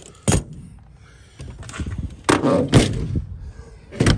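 Handling noise from storing gear in a pickup truck's tool compartment: a sharp knock, then a couple of seconds of rattling and clunking, and another knock near the end as a hand works the compartment door's paddle latch.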